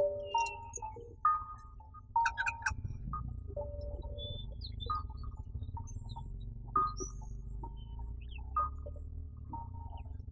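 Background music of short chiming, bell-like notes, with a low steady rumble underneath from about three seconds in.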